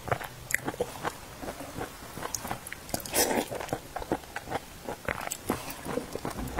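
Close-miked chewing of calcium milk biscuits soaked soft in milk tea, with many small wet mouth clicks and a louder noisy burst about three seconds in.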